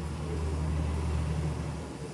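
A low, steady rumbling hum that eases off near the end.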